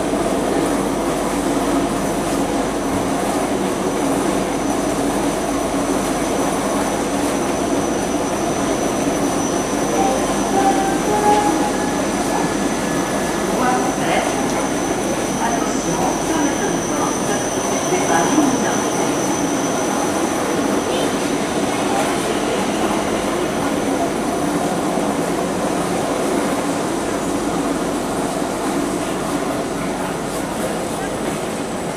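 Railway station platform ambience beside a standing sleeper train: a steady dense hum and hiss, a thin high whine that is strongest in the middle, and scattered voices.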